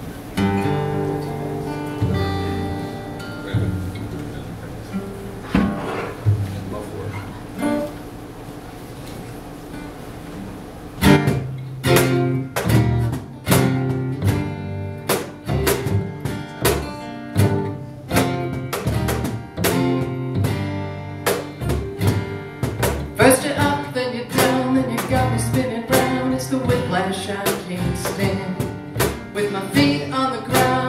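Acoustic band of guitars, upright bass and cajon playing a song's instrumental intro: slow, sparse picked notes for about the first eleven seconds, then a steady cajon beat comes in with strummed acoustic guitars and bass.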